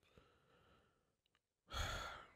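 A man breathing into a close microphone: a faint breath in, then a louder sigh out near the end.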